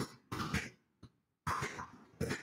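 Typing on a computer keyboard close to the microphone: short bursts of key taps with a pause of about half a second in the middle.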